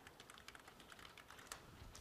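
Faint typing on a computer keyboard: a quick run of light key clicks.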